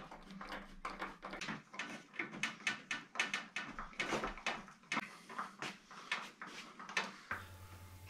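Hand screwdriver turning screws in the aluminium wall profile of a shower enclosure: a run of small, irregular clicks and scrapes that stops shortly before the end.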